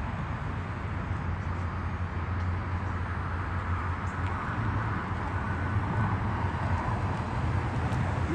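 Outdoor urban background noise: a steady low hum under a continuous hiss.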